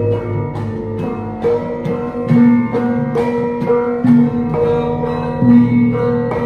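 Javanese gamelan ensemble playing: bronze metallophones, kettle gongs and hanging gongs struck in a steady pulse, each note ringing on over sustained low gong tones.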